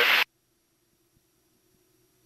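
Near silence with a faint steady hum, after a spoken word cuts off abruptly a moment in. No engine or wind noise comes through.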